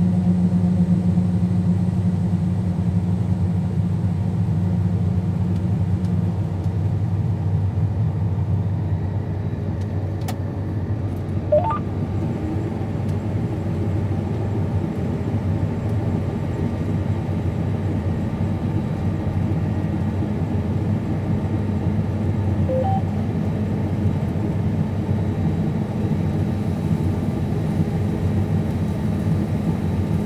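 Combine harvester running steadily under load while harvesting soybeans, heard inside the cab as a deep, even hum. One layer of the hum drops away about six seconds in, and a single short click with a brief rising squeak comes just before the middle.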